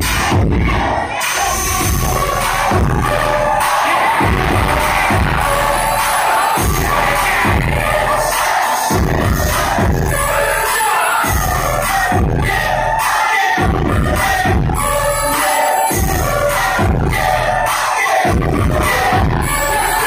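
Loud DJ dance music with a heavy, pulsing bass beat over a sound system, and a large crowd shouting and cheering along.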